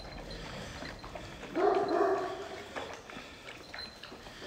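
A dog gives one short, drawn-out call about one and a half seconds in, with faint scuffling around it.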